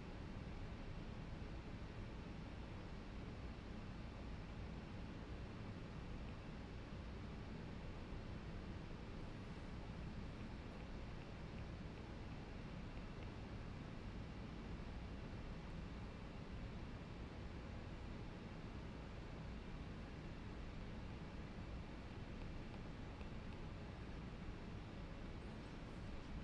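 Quiet, steady background hum and hiss: room tone, with no distinct sound events.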